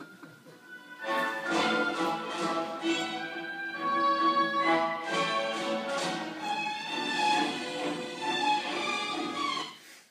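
Recorded symphony orchestra playing classical music, strings prominent, played back into the room. It comes in about a second in and is cut off just before the end.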